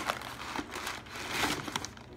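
Newspaper packing crumpling and rustling as it is unwrapped and pulled apart by hand, the crinkling loudest past the halfway point.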